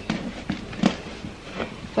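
Rolled denim shorts and other clothes being pushed into a drawer by hand: a few short rustles and soft knocks of fabric against fabric and the drawer.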